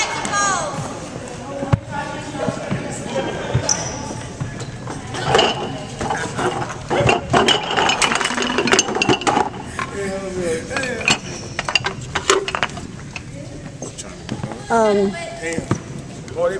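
Scattered voices echoing in a gymnasium, with a run of sharp knocks and slaps on the wooden floor in the middle, from feet, ropes or balls striking it.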